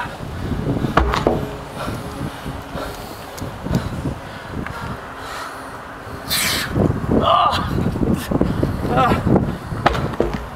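Dull thud of a 580 lb tractor tire landing on asphalt about a second in, followed by a man's heavy breathing and strained grunts as he works to flip it again.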